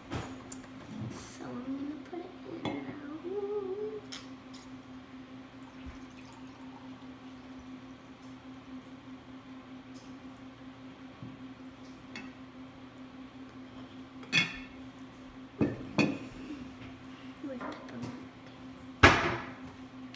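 Water poured from a ceramic teapot into a ceramic mug, a soft trickle, followed by several sharp clinks and knocks of ceramic and small glass bottles on a wooden table, the loudest just before the end.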